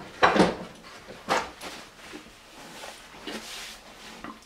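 Paper towel being pulled and torn off a roll in an under-cabinet holder: two short ripping rustles in the first second and a half, then a fainter rustle of the paper.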